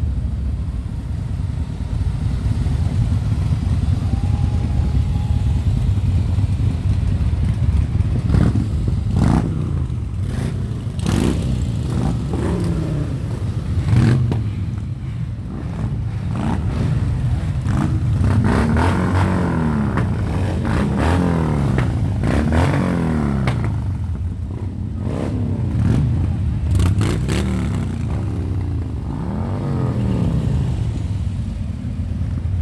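A column of motorcycles, mostly Harley-Davidson V-twin cruisers and baggers, riding off one after another. A steady low engine rumble gives way, from about eight seconds in, to a string of bikes revving as they pass close, each one rising and then falling in pitch.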